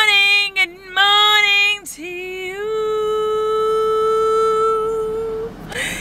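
A woman singing without accompaniment: two short wavering phrases, then a slide up into one long note held for about three seconds that stops shortly before the end.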